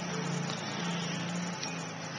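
A steady low hum with an even hiss behind it, the hum dropping out briefly a couple of times.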